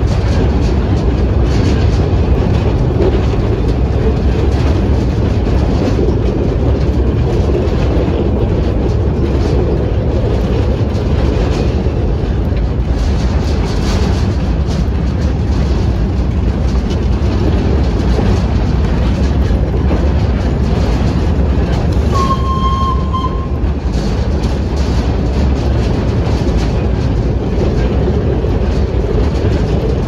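Narrow-gauge train carriage running along the track, heard from aboard: a steady rumble with light clattering of the wheels on the rails. A brief high tone sounds about three-quarters of the way through.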